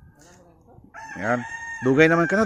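A gamecock crowing once: one long held call starting about a second in.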